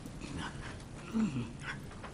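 Quiet meeting-room background with a short, faint off-microphone voice sound a little over a second in, falling in pitch.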